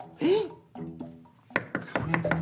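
Soft background music with a short vocal sound. About one and a half seconds in comes a sharp knock and a few quick clatters as a paper shopping bag is set down on a wooden chest.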